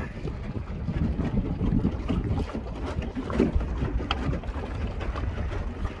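Wind buffeting a phone's microphone over open water, a steady low rumble, with water splashing against a small boat's hull and a few faint knocks about three and four seconds in.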